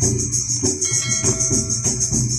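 Live folk devotional music: a barrel hand drum and jingling kartal clappers play a steady, even beat of about three strokes a second, with a constant high jingle over it.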